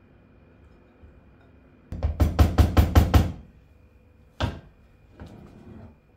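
A quick run of about eight sharp knocks in just over a second: a serving bowl and spoon rapped against a cooking pot to knock Turkish delight pieces into it. One more knock follows about a second later.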